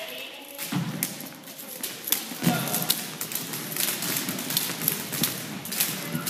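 Jump ropes slapping a wooden gym floor and feet landing from several jumpers at once, an irregular patter of taps and thuds.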